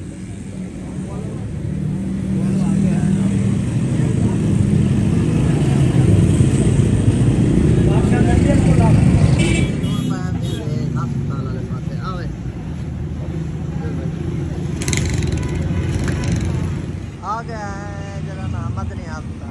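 Road traffic: motor vehicle engines making a low rumble that builds over the first few seconds and eases off about ten seconds in, with voices nearby.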